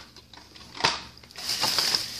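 A plastic shopping bag being rummaged through, rustling and crinkling, with one sharp click just under a second in before the rustling picks up.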